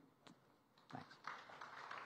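Faint audience applause, starting about a second in and continuing steadily.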